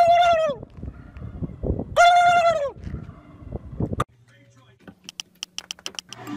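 A turkey gobbling twice: two loud, warbling calls about two seconds apart. A few faint quick clicks follow near the end.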